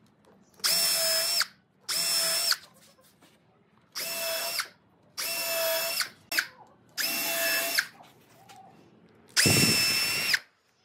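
Cordless drill motor running in six short bursts of under a second each, with a steady whine in each burst, as it works into the wooden frame. The last burst, near the end, is heavier, with more low rumble.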